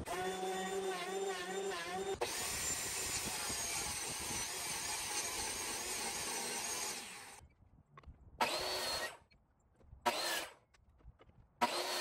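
A thickness planer runs for about two seconds. Then a table saw rips a board for about five seconds with a wavering high whine. After a short gap come three brief runs of a miter saw, each whining up as it starts.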